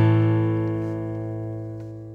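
Final strummed acoustic guitar chord of the song ringing out and fading away, with its low note sustaining longest.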